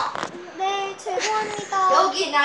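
A young girl singing a short tune in a few held notes.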